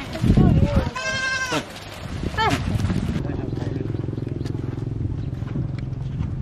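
Goats in a passing herd bleating: two short calls, the first arching up and down and the second falling, with a brief low rumble just before them. A steady low hum runs through the second half.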